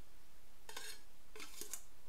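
Metal spoon clinking and scraping against a plate as boiled rice is served onto it, in two short bursts: one just under a second in and another near the end.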